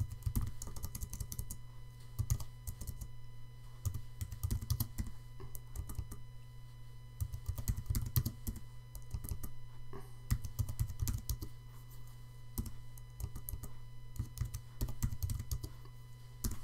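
Typing on a computer keyboard: quick runs of keystrokes with short pauses between them, over a steady low hum.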